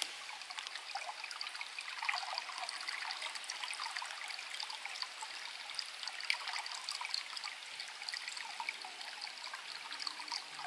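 Shallow rocky creek trickling between stones: a steady stream of small splashes and gurgles.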